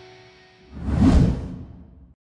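A whoosh sound effect that swells up about two-thirds of a second in and fades away, following the last ringing notes of guitar music dying out.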